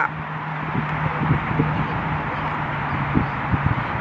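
Church bells ringing, heard as a steady low hum under an even wash of sound.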